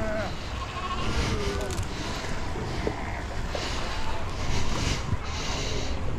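Cape fur seal pup bleating: a wavering, sheep-like call about a second in, over a steady low rumble of wind on the microphone.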